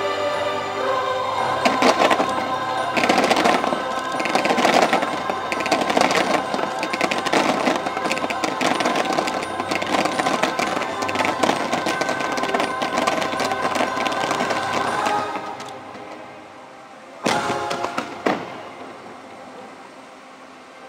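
Fireworks finale barrage: many shells bursting and cracking in quick succession over loud orchestral music. The music and the barrage drop away after about fifteen seconds, and two single heavy bangs follow near the end.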